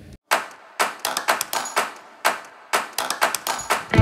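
A run of sharp, irregular taps or knocks, about three a second, each with a short ringing tail.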